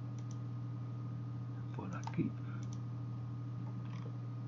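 A few faint computer mouse clicks, two near the start and more about two and a half seconds in, over a steady low electrical hum.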